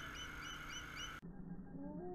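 Eagle calling in a quick series of short, high, rising chirps, about three a second, over a steady hum. A little over a second in, the sound cuts off abruptly and muffled music with sliding notes takes over.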